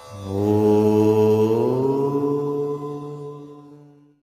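Intro-jingle sound: one long, deep chanted vocal note that swells in at the start, rises slightly in pitch about halfway through, then fades and cuts off at the end.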